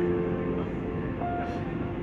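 Grand piano played softly: a held chord rings on and fades, and a single higher note is struck about a second in, over a low background rumble.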